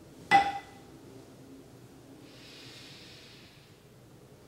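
A small metal meditation bell struck once, a bright ring that dies away within a second, sounding the start of a meditation sit. About two seconds later comes one long, soft breath.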